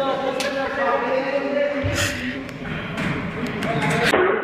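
Men's voices talking and calling, with a sharp knock-like thud about halfway through and a few light clicks near the end.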